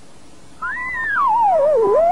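A wavering electronic whistle tone starts about half a second in. It glides up, then falls steadily and begins to rise again, over a faint steady tone.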